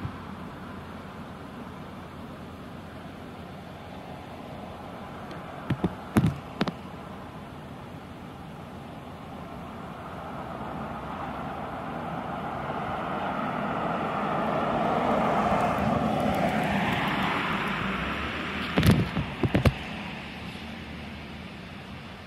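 A road vehicle passing: a steady rushing noise builds over several seconds, is loudest about two-thirds of the way through, then fades away. Short sharp clicks come in pairs about six seconds in and again near the end.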